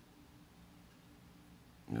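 Quiet room tone with a faint steady low hum, until a man's voice starts right at the end.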